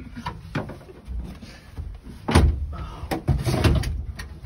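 Clunks and knocks of a van seat being turned round on a swivel turntable plate, with heavier thumps after about two seconds and again after about three, as the seat and feet knock against the bare metal van floor.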